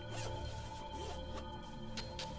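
Zipper on a soft laptop case being pulled open in a few quick strokes, over steady background music.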